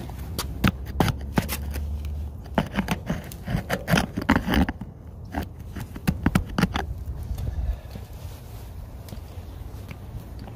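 A quick, irregular run of sharp taps and knocks on a hard surface, most of them in the first seven seconds, over a steady low rumble.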